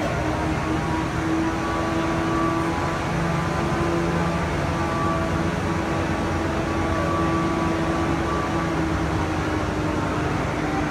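Steady machine hum: a continuous low drone with a fainter higher whine above it, unchanging throughout.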